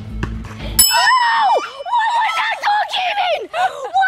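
A sharp bell-like ring, about a second long, comes in a little under a second in, followed by excited overlapping shouts and squeals from several young voices.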